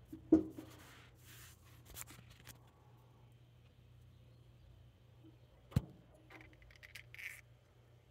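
Faint handling noises: light scrapes and small knocks, with one sharp click a little before six seconds in, over a low steady hum.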